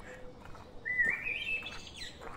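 A bird singing a short phrase of quick notes that step upward in pitch, starting about a second in.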